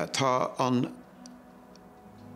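A man speaking for about the first second, then a quiet pause in the room with a faint steady hum and two faint ticks.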